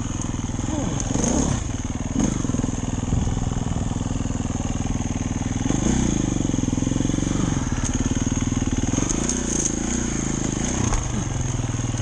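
Dirt bike engine running at low speed, its pitch rising and falling with the throttle several times.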